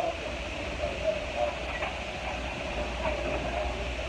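Steady low rumble and hum inside an airport jet bridge, with a murmur of passengers' voices and a few light footsteps on carpet.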